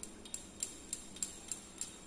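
Small laboratory glassware being tapped with a thin tool, giving light, evenly spaced glassy clinks with a brief high ring, about three a second.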